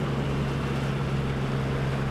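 Gibbs Humdinga amphibious vehicle's V8 engine running at a steady pitch as it speeds across water, with a steady hiss of spray and wind over it.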